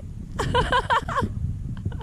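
A person's voice briefly, about half a second in, over a low steady rumble of wind on the microphone.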